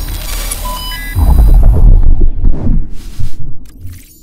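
Logo-animation sound effect: glitchy electronic noise with short high beeps, then a deep bass hit about a second in that rumbles and fades away over the next two seconds.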